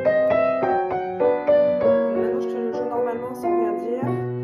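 Upright piano playing a waltz: a right-hand melody over a left-hand accompaniment.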